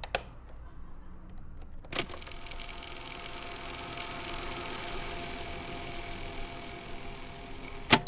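Portable cassette tape recorder being handled: a click at the start and a louder one about two seconds in, then its motor whirring steadily for several seconds, ending in a sharp click near the end.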